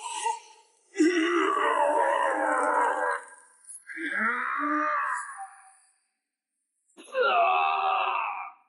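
Wordless straining groans and cries from a voice actor, three of them, each one to two seconds long, with silence between.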